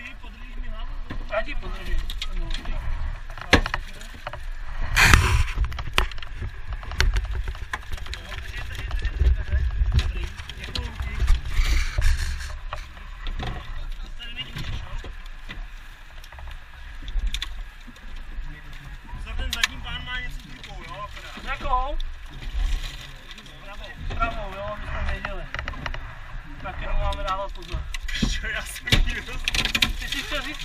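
Muffled voices of a rescue crew heard from inside a car, with scattered knocks and one loud knock about five seconds in, over a steady low rumble.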